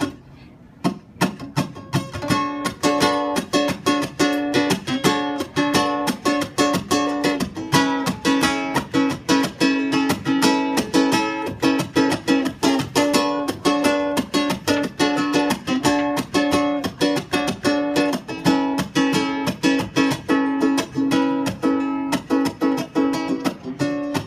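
Ukulele strummed in a steady rhythm: the instrumental intro of a song, starting about a second in.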